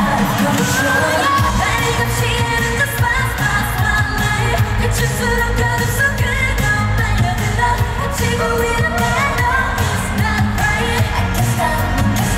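Live K-pop girl-group performance heard through the arena sound system: female voices singing a melody over a synth-pop backing track with a steady, heavy beat.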